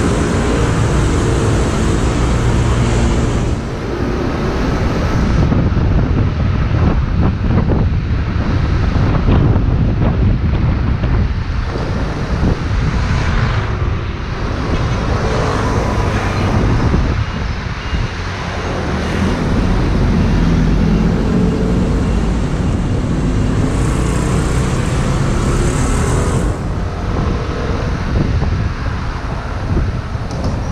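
A scooter being ridden through city traffic: its small engine running steadily, with wind buffeting the microphone and the noise of surrounding cars and scooters.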